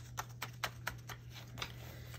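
Paper handling on a disc-bound planner: a loose card is tucked back in among the discs and a page is turned, a run of faint ticks and rustles.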